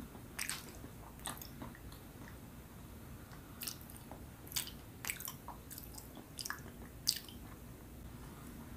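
A person chewing soft, sticky Filipino rice and cassava cakes (kakanin) close to the microphone, with short mouth clicks at irregular intervals.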